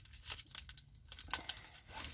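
Foil wrapper of a Pokémon trading-card booster pack crinkling and tearing in small irregular crackles as it is worked open by hand; the pack is a stubborn one to open.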